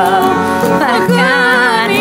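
Traditional Epirus folk song in a 4/4 rhythm: an ornamented melody with wavering pitch over steady instrumental accompaniment.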